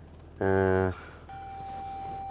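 A steady electronic warning tone from the Toyota Vellfire's dashboard starts a little over a second in and holds unbroken, coming on as the 360-degree parking camera view appears.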